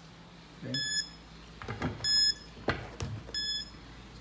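Piso WiFi coin vending machine's buzzer beeping three times at an even pace, about 1.4 s apart, each a short high electronic beep: the machine is in coin-insertion mode, waiting for coins. A few sharp clicks of handling come in the second half.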